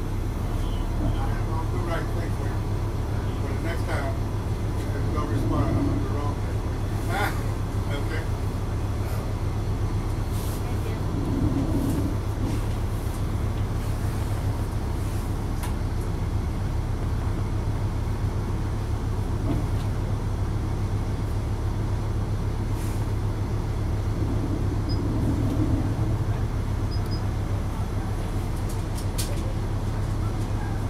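Inside the cabin of a 2004 Neoplan AN459 articulated bus, its Caterpillar C9 diesel engine running at idle with a steady low hum. A few brief clicks and rattles come through the body.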